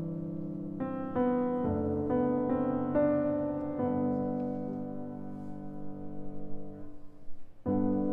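Steinway concert grand piano played solo in a slow, gentle jazz ballad: chords are struck one after another in the first four seconds and left to ring and fade. The sound thins almost to nothing about seven seconds in, and a new chord comes just before the end.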